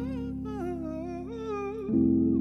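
A man's wordless vocal line, hummed or crooned, gliding up and down over a held electric piano chord that fades away; a new chord is struck near the end.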